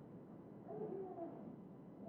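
Quiet room tone in a pause of speech, with a faint wavering pitched sound about a second in.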